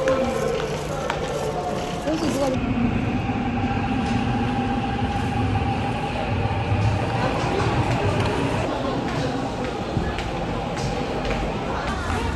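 A Seoul Subway Line 6 train at the platform: a steady electric whine starts about two seconds in and stops near nine seconds, over the voices and noise of the station.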